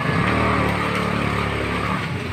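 A motor vehicle's engine running steadily with a low hum, cutting off suddenly near the end.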